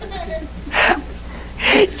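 Two short, sharp breathy gasps about a second apart, over a steady low hum.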